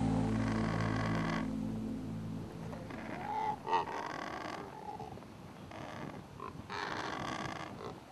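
Background music fading out over the first two seconds or so, then a few short, low guttural calls from flightless cormorants at their nest, about halfway through.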